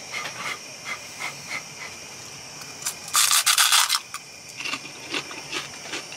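A bite into a puffed, poppadom-like fried snack ball: a loud, dry crunch about three seconds in, lasting about a second, after a few light clicks.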